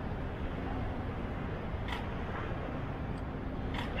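Steady outdoor background noise with faint distant voices and two faint clicks, one in the middle and one near the end.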